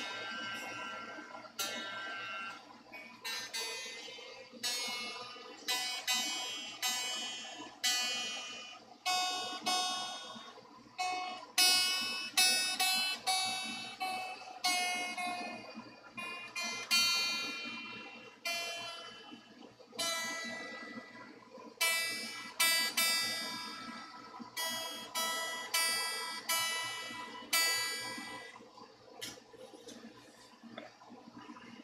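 Peavey Generation EXP electric guitar being tuned after a restring: its new strings are plucked one at a time and left to ring, about one or two notes a second. Near the middle one held note sags slightly in pitch as a tuning peg is turned.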